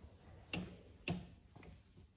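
Footsteps on a stone floor: two sharp steps about half a second apart, then a fainter third.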